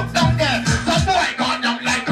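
Live reggae dancehall music: a deejay chanting lyrics into a microphone over a riddim with a steady heavy bass beat, played loud through a sound system.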